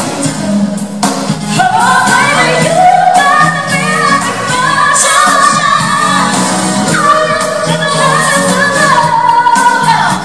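Two female pop vocalists singing live over a band with keyboards and electric guitar, in sliding, held sung lines, heard from the audience in a concert hall.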